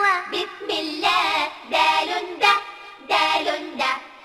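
A child's voice singing a song about the Arabic letter dal, in short sung phrases with brief breaks between them.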